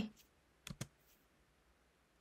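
Two short, sharp clicks close together about three-quarters of a second in, with near silence around them.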